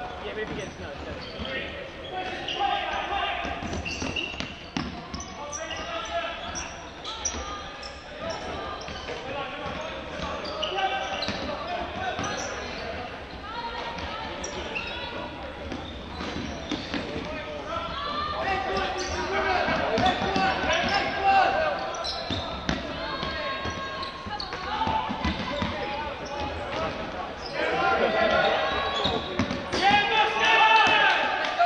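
Indoor ultimate frisbee game: players calling and shouting to each other across an echoing sports hall, with running feet thudding on the wooden court floor.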